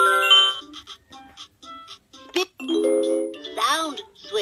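VTech Letter Sounds Learning Bus toy sounding through its small speaker. It opens with a ding-dong electronic chime, then there is a run of short clicks as a letter wheel is turned. A brief electronic jingle and a short burst of the toy's voice come near the end.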